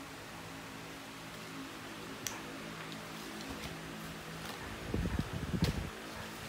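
A steady low hum in a quiet room, with a few light clicks. About five seconds in comes a short, louder stretch of low thumps and rustling as large card flashcards are moved about on a tiled floor.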